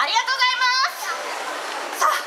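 A high-pitched voice yells, rising and then held with a wavering pitch for under a second, followed by crowd chatter.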